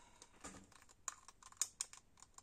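Faint, irregular light clicks and taps of small paint pots being handled and moved about, the loudest a little over halfway through.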